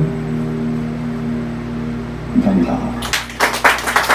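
Acoustic guitar's closing chords ringing and slowly fading, with one more soft strum about two and a half seconds in; the song ends and a small audience breaks into applause about three seconds in.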